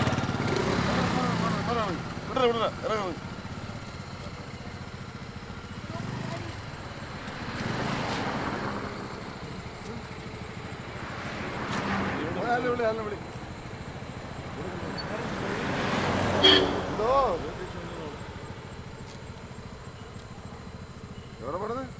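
Men's raised voices in short exchanges, loudest near the end, with a scooter's small engine idling in the first few seconds.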